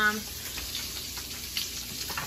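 Food frying in a pan: a steady sizzle with scattered small crackles.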